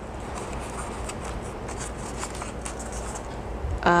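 Hands working a small black plastic projector box: a steady rustling scrape with light clicks.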